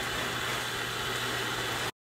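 Water spraying from a garden hose spray nozzle: a steady hiss that cuts off abruptly just before the end.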